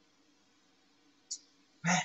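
Near silence: a faint steady low hum of room tone. A short hiss comes a little over a second in, and a voice starts just before the end.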